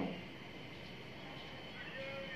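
A pause in speech: faint steady background hiss with a thin, steady high-pitched tone, just after a man's word trails off at the start.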